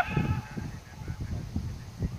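A loud shout from the pitch breaking off right at the start and trailing away, then a low, uneven rumble of wind buffeting the microphone during outdoor play.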